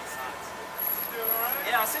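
Speech: voices talking, getting louder about a second in.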